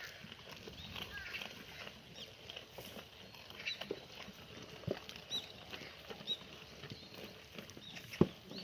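Black goats feeding on a heap of dried vines: faint rustling and crunching as they pull and chew the stems, with a few sharp taps, the clearest about five seconds in.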